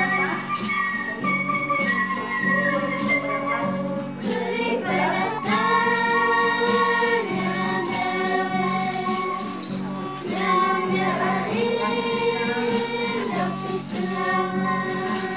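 A song: several voices singing long held notes together, with a rattle or shaker beating time.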